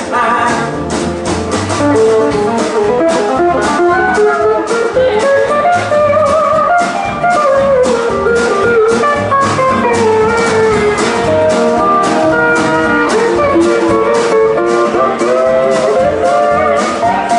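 Live band instrumental break led by a pedal steel guitar soloing in sliding, gliding notes, over strummed acoustic guitar and a steady drum-kit beat.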